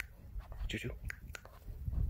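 A man whispering "chew chew" once, with a few faint clicks and a low rumble beneath.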